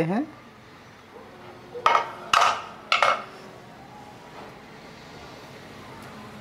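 Metal cookware clanking as an aluminium pressure cooker is opened: three sharp knocks about two to three seconds in.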